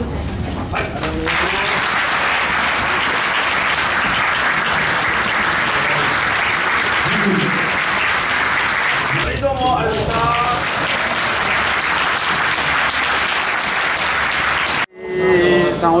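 A crowd applauding steadily, with a few voices calling out briefly partway through; the applause cuts off abruptly shortly before the end.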